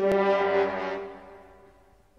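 Brass music: a loud held brass note that comes in at once and fades away over about a second and a half.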